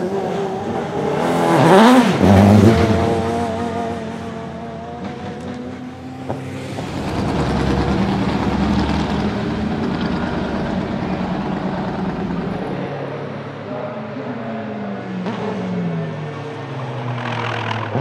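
Naturally aspirated 4.0-litre AMG V8 of a Mercedes-Benz CLK AMG DTM (C209) race car. The revs rise and fall sharply about two seconds in, the loudest moment. The engine then runs at lower, steadier revs, with falling revs near the end.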